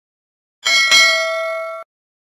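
Notification-bell sound effect: a bright ding struck twice in quick succession about half a second in, ringing on several clear tones and then cut off suddenly.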